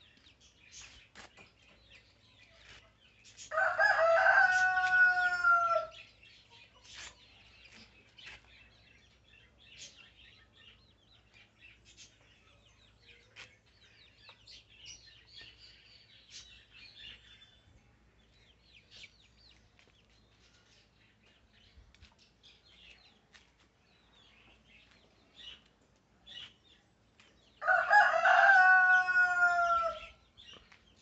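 A rooster crowing twice: one long crow a few seconds in and another near the end, each about two seconds long and dropping in pitch at the close.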